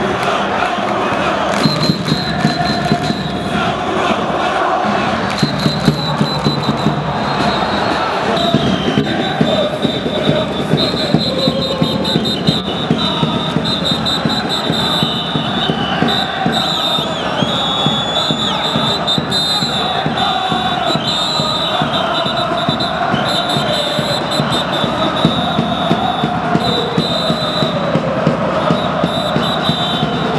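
Football supporters chanting together in a stadium stand, a dense, loud, steady mass of voices.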